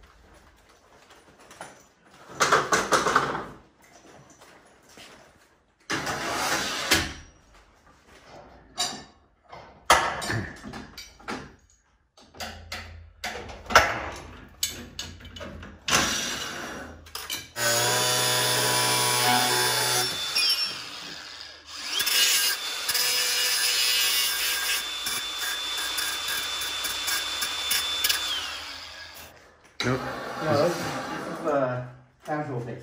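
Knocks and clatter of installation work, then an electric motor running in two stretches, about three seconds and then about six, the second with a steady whine that rises as it starts and falls as it stops.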